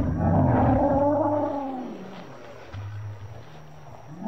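A Torosaurus call from the film's sound design: a loud, drawn-out, wavering call over the first two seconds that fades away, then a short, quieter low grunt about three seconds in.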